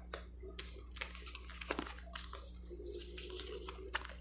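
Tarot cards being handled and slid apart in the hands: a run of faint, crisp rustles and clicks of card stock, over a low steady hum.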